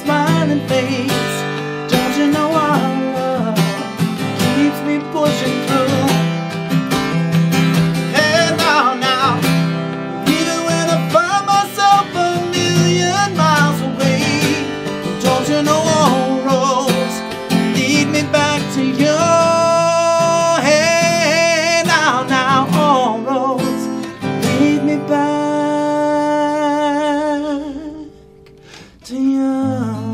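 A man singing live to his own acoustic guitar strumming, with long sung runs and held notes rather than clear lyrics. Near the end a long held note wavers with vibrato, then the music drops away for a moment before the guitar comes back in.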